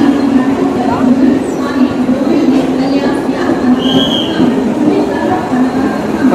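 Mumbai suburban local train running past the platform, with a loud, steady noise of wheels and carriages.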